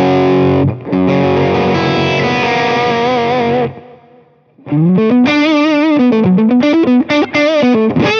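Electric guitar (PRS Hollowbody) through an Orange Rockerverb 50 Mk III's clean channel, pushed by a Zendrive-clone overdrive, with spring reverb. Ringing chords that end in vibrato, a short break about four seconds in, then a single-note lead line with bends and vibrato.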